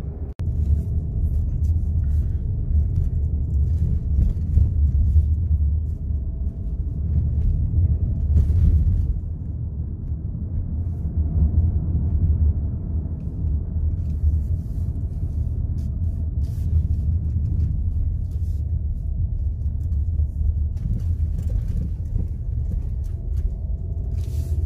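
Steady low rumble of a car driving, heard from inside its cabin, with a brief dropout just after the start.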